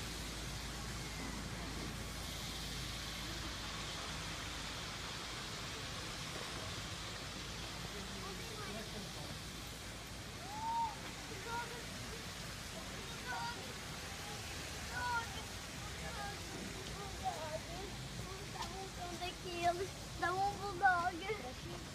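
Steady outdoor hiss of an open town square, with faint, brief voices of passersby coming in from about halfway through.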